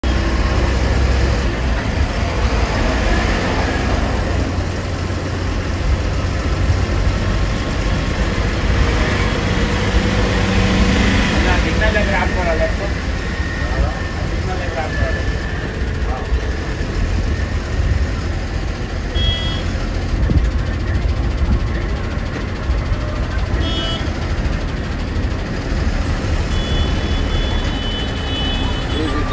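Bus cabin noise while driving: a steady, loud low rumble of engine and road. A few short high-pitched beeps come in over it during the second half.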